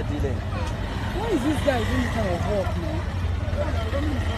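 People's voices talking, over a steady low rumble.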